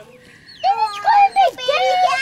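High-pitched, excited vocal calls with gliding pitch, starting about half a second in after a brief lull.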